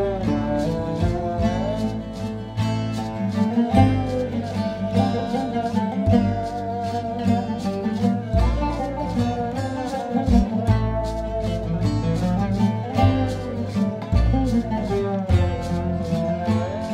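Oud playing a melody with sliding notes over strummed steel-string acoustic guitar, with upright bass and a steady shaker and drum beat underneath.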